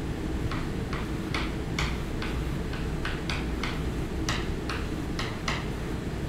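Chalk tapping and scratching on a blackboard while writing: short sharp strokes, about two to three a second at an uneven pace, over a steady low room hum.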